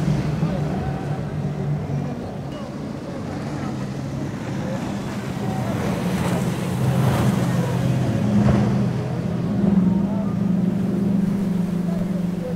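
Several outboard engines on fast boats running at speed, a steady low drone over the rush of water from the hull and wake. The drone dips in the first third, then grows louder and higher in pitch as the next boat, with four outboards, comes through.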